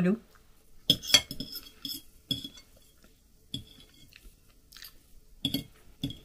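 A metal fork clinking and scraping against a plate, about seven light, sharp clinks spread irregularly across the few seconds, as food is picked at.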